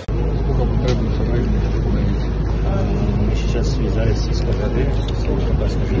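Cars moving slowly along a mud-covered road, under a steady low rumble, with people talking.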